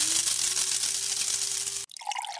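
Sound effect for an animated intro logo: a steady hiss with a faint low tone that rises and then holds, cutting off suddenly just before the end.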